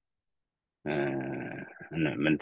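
Silence for most of the first second, then a man's low voice holding one drawn-out vowel, which runs straight into speech near the end.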